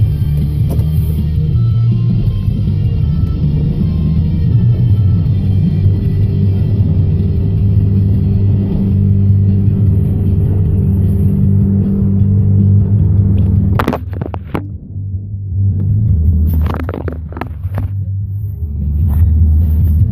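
A plow truck's engine rumbling under music. About fourteen seconds in, a sharp knock and the music stops, then a few more knocks and clunks over the engine.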